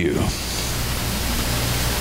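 Steady hiss with a low electrical hum, the noise floor of the microphone and recording chain, just after a man's spoken word ends.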